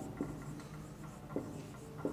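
Marker pen writing on a whiteboard: faint strokes with a couple of light taps of the tip on the board.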